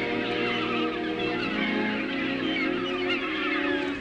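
Gulls calling, many short wavering cries one after another, over soft background music with long held notes.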